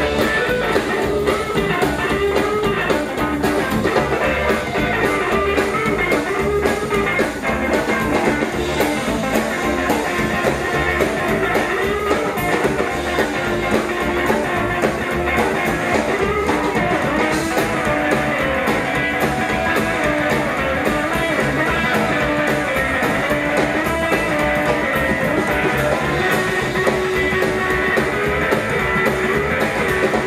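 Live rockabilly band playing an instrumental passage on upright double bass, acoustic and electric guitars and drums, with no vocals.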